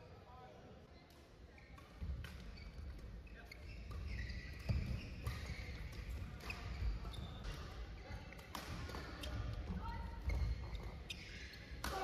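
Badminton rally in a sports hall: rackets hitting the shuttlecock in sharp knocks and players' footsteps thumping on the court, starting about two seconds in, with voices in the hall behind.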